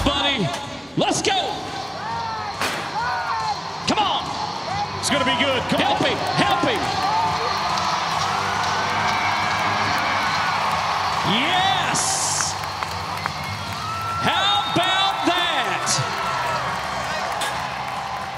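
Bull-riding arena during a ride: people yelling and whooping over a steady arena din, with several sharp knocks in the first few seconds.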